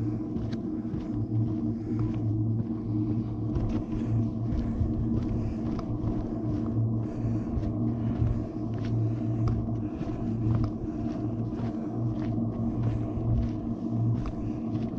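Footsteps on a dirt and gravel trail, about one step every 0.7 s, over a steady low hum and rumble.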